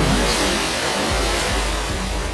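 Swimming-pool water splashing and churning as several people plunge in together. It is loudest right at the start, then settles into a steady rushing wash.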